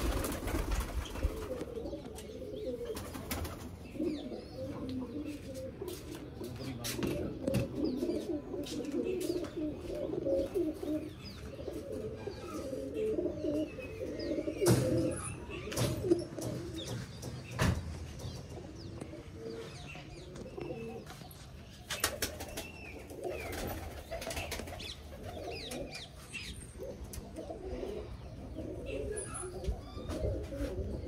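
A flock of domestic pigeons cooing continuously in a loft, many low burbling coos overlapping. A few sharp knocks cut through.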